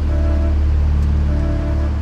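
Low, steady droning background score with two brief held notes, one near the start and one about halfway through.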